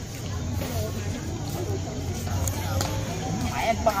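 Background chatter of people talking at a distance, over a steady low rumble.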